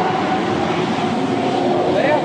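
A motor vehicle passing on the road: a steady engine drone with a held tone over road noise.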